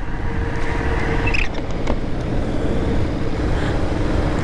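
Motorcycle engine running at a steady road speed, heard from the rider's seat, mixed with heavy wind and road noise.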